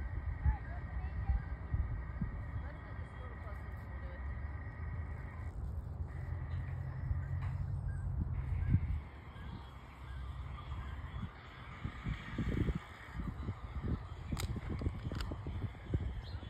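Wind buffeting the microphone in a low rumble that eases about nine seconds in, with faint harsh guinea fowl calls and a few knocks near the end.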